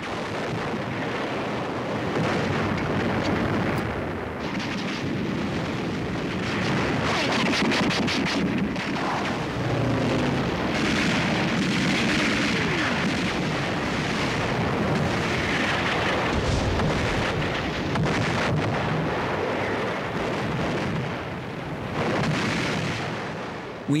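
A continuous din of artillery fire and shell explosions mixed with rapid gunfire, with a dense cluster of sharp cracks about a third of the way through.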